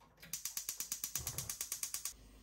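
Gas stove's spark igniter clicking rapidly and evenly, about a dozen ticks a second, as the burner knob is held turned; the clicking stops right at the end.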